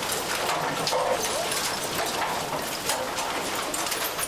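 Mixed household waste tumbling inside a rotating trommel screening drum: a dense, continuous clatter of knocks and rattles as the refuse falls and rolls.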